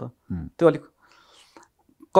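A man's speaking voice: two short syllables, then a soft breathy pause.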